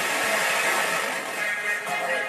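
FM radio hiss from speakers as a software-defined radio is tuned across the FM band between stations, with a station's music starting to come through near the end.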